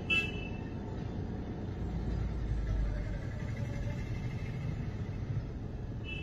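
Steady low rumble of a car and street traffic heard from inside the car's cabin, swelling briefly a couple of seconds in.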